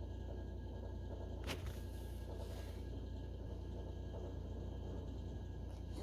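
Quiet room tone: a steady low hum, with one faint click about a second and a half in.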